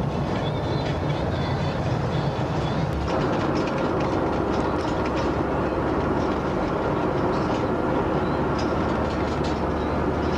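Steady road and engine noise from inside a van driving on a motorway. About three seconds in it changes to the noise in the back of the moving van among the dog cages: a denser rumble with light rattles and clicks.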